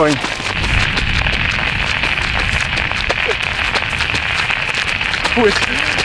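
Steady rushing wind noise on the microphone with a low rumble, with the light, quick ticks of running footsteps on a paved path.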